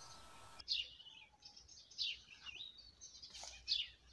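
Birds chirping: a few short, high calls that sweep downward, one about every second, the last and loudest near the end.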